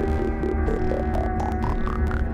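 Synthesizer music from a Korg Z1 and a Roland MC-808 groovebox: a run of short notes, about four or five a second, climbing steadily in pitch over a deep, steady bass throb.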